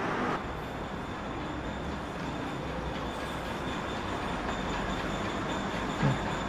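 Steady rushing noise with a low rumble and a faint high-pitched whine.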